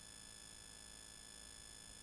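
Near silence: faint room tone with a steady, thin high-pitched electronic whine.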